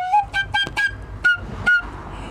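Solo flute music: a run of short, quick notes, ending in a breathy rush of air near the end.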